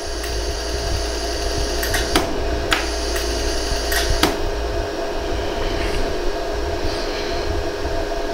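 Pulsed jewelry laser welder firing single shots on a gold hollow earring, each pulse a sharp click: about five clicks between two and four and a half seconds in, over a steady machine hum.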